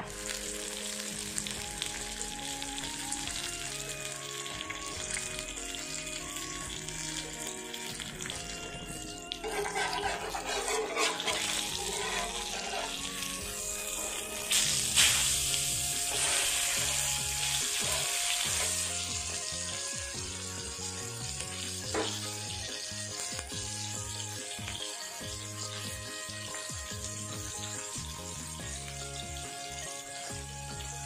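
Whole fish frying in hot oil in a pan, a steady sizzle that swells louder about a third of the way in and again around halfway, under background music.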